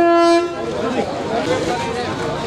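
A single short honk of a bus horn, one steady note lasting under half a second, followed by people talking.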